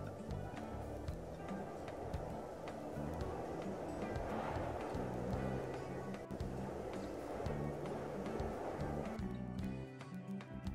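Background music over a wind sound effect: a rushing gust that swells around the middle and cuts off about a second before the end.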